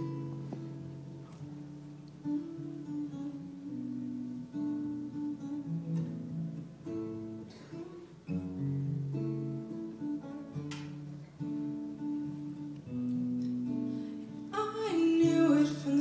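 Acoustic guitar playing a solo instrumental passage of plucked notes and chords. Near the end a woman's singing voice comes back in over it.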